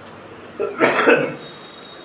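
A man's short cough, in two quick bursts, about half a second in.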